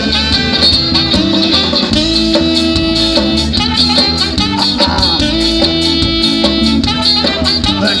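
Ska-punk band playing live through a festival PA in an instrumental stretch: electric guitars, horns, bass and drums on a steady, driving beat, with no singing.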